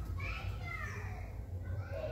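Children's voices, indistinct chatter and calls, over a steady low hum.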